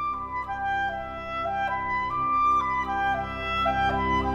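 Background instrumental music: a slow melody of held notes moving up and down step by step over a sustained accompaniment.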